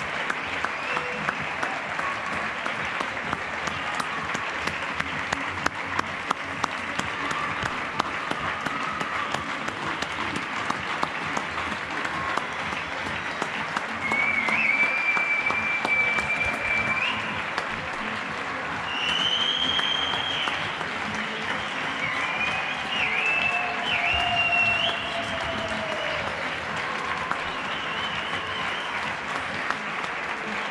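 Many people clapping from the surrounding apartment blocks, a steady, scattered applause. In the second half a few high held tones, some sliding, rise above the clapping.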